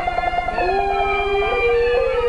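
Peking opera music in the slow daoban mode: long held notes over the string accompaniment. A second sustained note enters about half a second in and slides up in pitch near the end.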